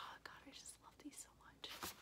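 Faint breathy whispering and mouth sounds from a person, in several short bursts with no clear voiced words.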